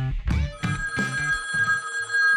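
Plucked guitar notes of a music jingle, then from about half a second in a steady two-tone telephone ring held to the end, over a faint low note.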